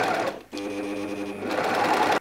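Bernina 1150MDA overlocker running at speed, sewing a test overlock seam through fabric, with a brief break about half a second in before it runs on steadily.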